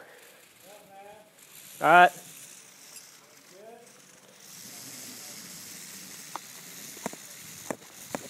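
Climbing rope hissing steadily as it runs through a descent device during a rappel, starting about halfway through, with a few sharp clicks near the end.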